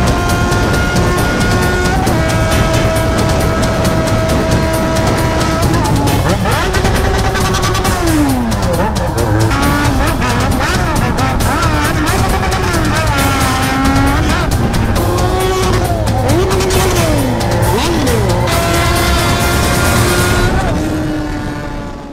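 Yamaha XJ6 600cc inline-four motorcycle engine at high revs: a steady high-pitched note for the first several seconds, then revs falling and rising again and again through gear changes and throttle changes, before holding steady once more and fading out near the end.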